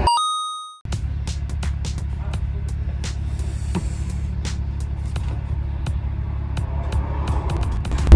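A short bright electronic chime at the start, then a steady low hum with scattered light clicks and knocks.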